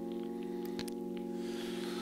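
A sustained keyboard chord of several notes, held steady without fading, with a few faint clicks over it.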